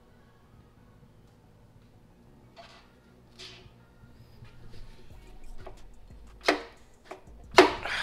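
Mostly quiet, with a few short breathy noises, then a man's heavy sigh near the end.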